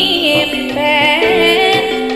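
Live campursari music: a band plays held notes under a singing voice that slides through ornamented turns.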